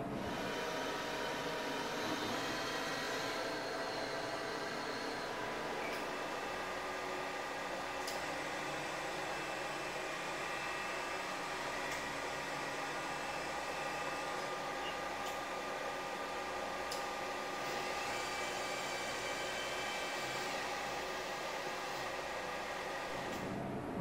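Radiotherapy linear accelerator running its pre-treatment imaging scan: a steady whirring hum with several steady tones and a few faint clicks.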